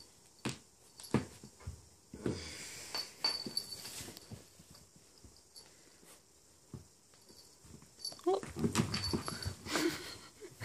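Pembroke Welsh corgi puppy in dog shoes: scattered taps and scuffs of the shoes on a wooden floor as it squirms, then a run of small grunts and whimpers near the end as it mouths a plush toy.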